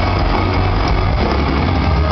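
Live rock band playing loud in a large arena: electric guitars, bass and drums blurred together into a dense, bass-heavy wash with no clear notes standing out.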